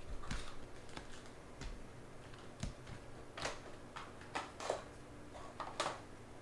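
Stiff chrome trading cards being flipped through by hand, one card slid behind another, making a series of irregular short clicks and swishes.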